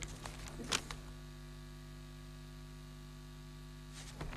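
Steady electrical mains hum in the audio, with a few soft clicks and rustles of a newspaper being handled in the first second.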